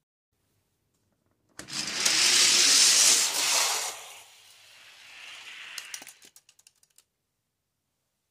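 Two Hot Wheels die-cast cars running on orange plastic track: a sudden loud rattle of small wheels on the track begins about a second and a half in, fades to a quieter run, and ends in a string of quick clicks as the cars come to rest at the finish gate.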